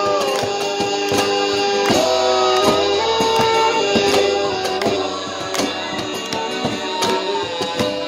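Live acoustic band music: a saxophone holding long melody notes over acoustic guitar and frequent slapped cajon beats.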